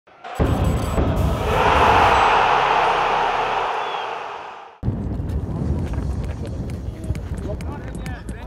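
Animated logo intro sting: a loud whooshing swell that peaks about two seconds in, fades, and cuts off suddenly near the five-second mark. Outdoor pitch ambience follows, with scattered sharp knocks.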